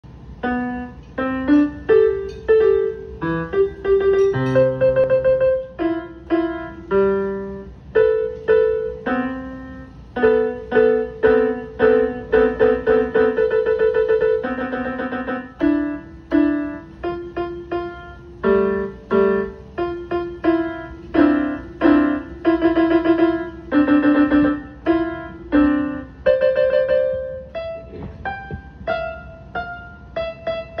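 A piano playing a melody one note at a time, a couple of notes a second, with a few lower notes underneath; each note is struck and then fades.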